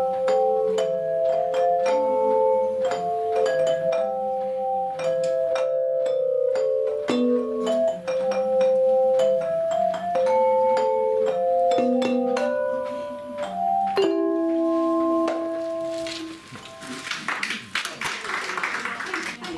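Belleplates, handheld flat metal bell plates, played by an ensemble, ringing a carol melody of held notes and chords. The piece ends on a sustained chord about fourteen seconds in, and applause starts near the end.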